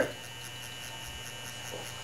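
FK Irons Exo wireless rotary tattoo machine running steadily.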